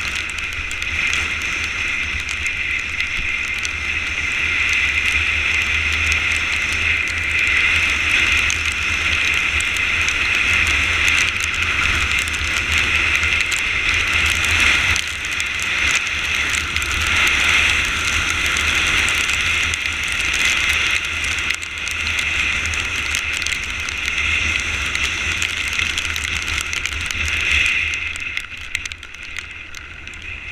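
Motorcycle riding on a rain-soaked road: a steady rush of wind and tyres on wet asphalt, dropping off near the end.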